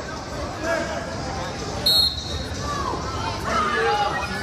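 Coaches and spectators shouting over one another at a wrestling bout in a large gym. About halfway through, a brief shrill high tone is the loudest sound.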